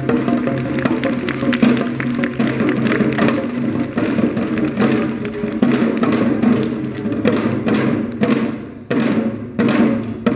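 Korean janggu hourglass drums struck rapidly by dancers, over music with held, sustained notes. After about eight seconds the drumming breaks into a few loud, separate strokes with short gaps between them.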